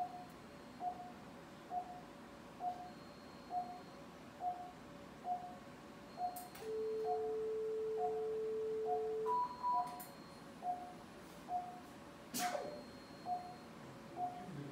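Operating-room patient monitor beeping steadily with the heartbeat, a little faster than once a second. Around the middle, an electrosurgical vessel-sealing generator sounds a steady tone for about three seconds while sealing, then gives a short higher double beep as the seal completes. A sharp click near the end.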